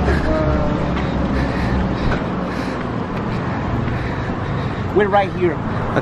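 Steady outdoor street noise with traffic, a low rumble that is strongest in the first second or so and then eases, under brief snatches of a man's voice.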